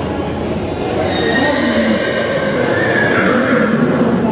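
A horse whinnying once, a long call lasting about two and a half seconds that starts about a second in and rises then falls in pitch near its end.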